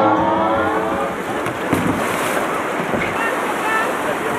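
Music that breaks off about a second in, then the steady rush of white water through a river rapid, with wind buffeting the microphone.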